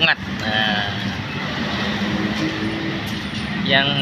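Steady engine rumble and street noise with a low hum, under faint voices. A man starts to speak near the end.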